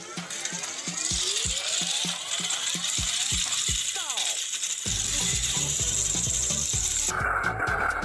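Small electric motors and plastic gearboxes of battery-powered toy trains whirring and clicking steadily while two engines push against each other on plastic track. Background music with a heavy beat comes in about five seconds in.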